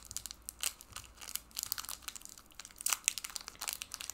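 Foil wrapper of a Pokémon trading-card booster pack crinkling and tearing as it is opened by hand: a run of irregular crackles.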